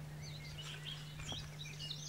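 Faint outdoor birdsong: small birds chirping intermittently, over a steady low hum.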